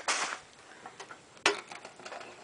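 A wire cage trap being handled: a short metallic rattle just after the start, a few faint ticks, then one sharp click about one and a half seconds in.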